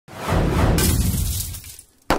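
Glass-shatter sound effect with a deep boom under it. A brighter crash comes about three-quarters of a second in, and the sound dies away by the end.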